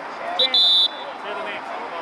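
A referee's whistle: a quick peep followed at once by a short steady blast, about half a second in, cut off sharply, over faint spectator voices.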